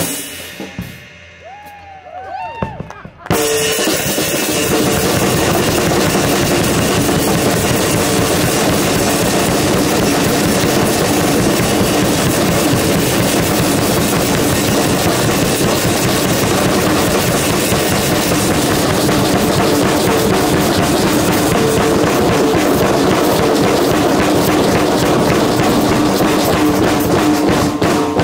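Many drum kits played together in a group jam. They stop together on a hit, leaving a quieter gap of about three seconds, then all come back in at once and play on loudly without a break.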